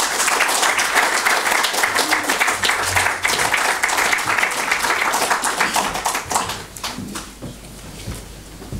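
An audience applauding, dense clapping that thins and dies away about seven seconds in.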